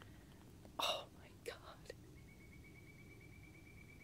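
A short whisper from the woman filming, about a second in, over a quiet background. Two faint ticks follow, and a faint steady high-pitched tone runs through the second half.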